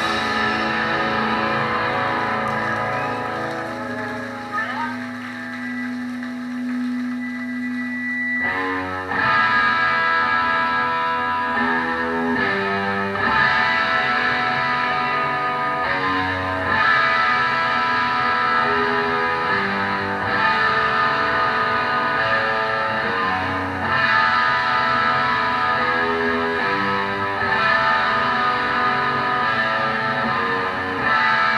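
Live punk band's distorted electric guitars and bass played through stage amplifiers: held notes ring out and fade for the first eight seconds or so, then the full band comes in with a driving guitar riff.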